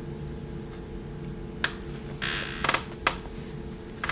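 Paperback books being handled: a couple of light taps and a brief rustle as one book is put down and the next picked up, over a steady low room hum.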